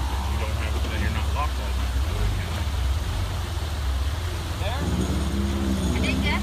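A vehicle engine running steadily at low speed, with voices in the background and a steadier tone joining in near the end.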